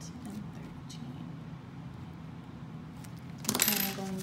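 Paper banknotes rustling as a stack of bills is picked up and handled, a short crisp burst near the end over a low steady hum.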